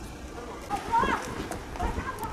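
A person's raised voice in a couple of short utterances, over low background noise.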